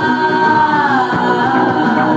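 Female singer in a live set holding a long sung note into a microphone, the pitch sliding down about a second in, over instrumental backing.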